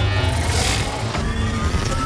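Cinematic trailer music over a deep, steady rumble of sound effects, with a rushing swell about half a second in.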